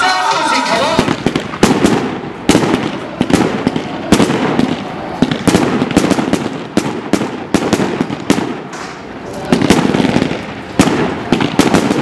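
Fireworks going off: a quick, irregular run of sharp bangs and crackles, several a second. Music with singing runs until about a second in and then stops.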